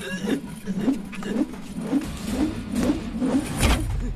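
A metal chair dragged across a concrete floor, its legs scraping and juddering in a repeated rising grind about twice a second. A heavy thud comes near the end.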